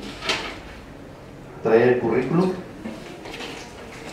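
A short burst of a person's voice about halfway through, the loudest sound. Around it are light handling noises, like papers and envelopes being moved on a table.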